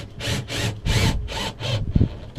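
Cordless drill driving a screw through a wooden slat in about six short, rough bursts, with a sharp click near the end.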